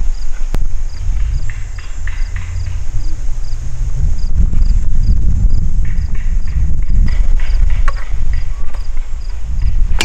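Wind buffeting the microphone outdoors, a loud, uneven low rumble, with a sharp click about half a second in and light clicks of the aluminium climbing sticks and bungee cords being handled. A faint high ticking repeats about twice a second throughout.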